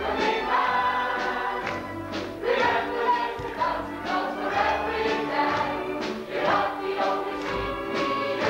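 Live stage-musical dance number: a chorus singing over a band accompaniment, with a steady beat of about two strokes a second.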